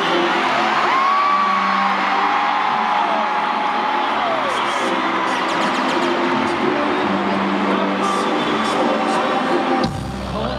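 Live pop music played loud through an arena sound system and picked up from among the audience, with fans' high whoops and screams over it. The sound dips abruptly for a moment just before the end.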